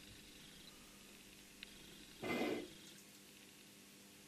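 A faint tick, then a short scrape about half a second long a little past halfway: the steel lathe tool and rusty steel disc being shifted on the milling machine table.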